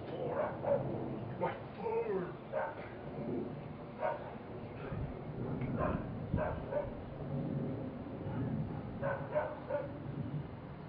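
A dog barking and yipping in short, irregular calls.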